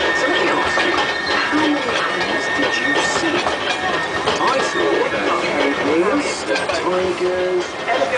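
Passengers' voices chattering over a small Severn Lamb park train running along its track, with a thin steady high whine that fades out about two thirds of the way through.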